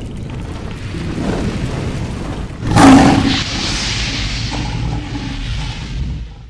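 Cinematic logo-reveal sound design: a low rumble building, then a loud boom-like impact about halfway through, followed by a sustained hiss that fades out at the end.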